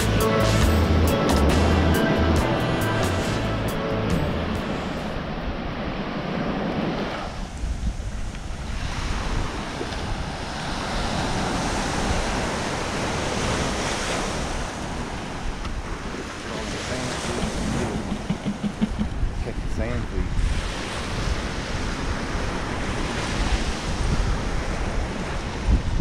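Background music for the first few seconds, fading out, then ocean surf washing onto a sandy beach with wind on the microphone.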